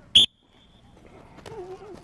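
A coach's whistle: one short, shrill blast near the start, with a fainter held whistle tone trailing on for most of a second after it. A faint voice is heard near the end.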